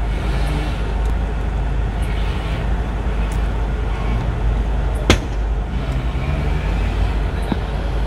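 Steady outdoor street noise, a low rumble with hiss, near a road blocked by burning cars. A single sharp crack stands out about five seconds in, with a few fainter clicks.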